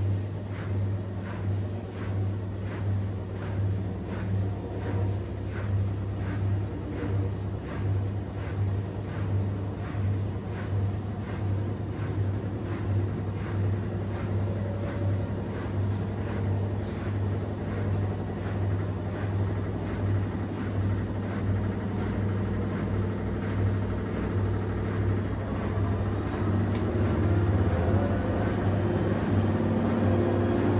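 Miele W1 and AEG front-loading washing machines running in their wash phase: a steady motor hum with rhythmic swishes of water and laundry in the tumbling drums, about two a second. In the last several seconds a motor whine rises steadily in pitch and the sound grows louder as one drum speeds up.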